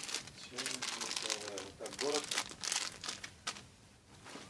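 Clear plastic packaging crinkling and rustling in bursts as a bagged children's garment is handled, with a voice speaking briefly in the middle.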